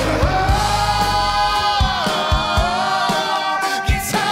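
Live band music with a sung vocal holding long notes that slide down in pitch, over regular drum hits.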